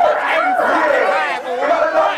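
Loud chatter of several people talking and calling out over one another, no single voice clear.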